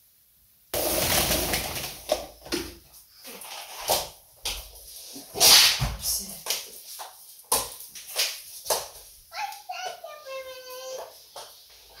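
Wet string mop being swished and pushed across a laminate floor in irregular strokes. A child's voice babbles near the end.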